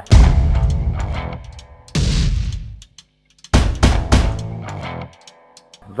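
Music: three loud chord hits backed by drums and cymbal crashes, each left to ring out and fade, the third after a brief pause.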